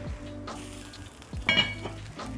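Ground turkey, bell pepper and onion frying in a pot with a steady sizzle, under background music with a soft beat.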